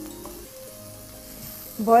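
Minced meat (keema) sizzling as it goes into hot oil with fried onions in a non-stick kadai, stirred with a wooden spatula.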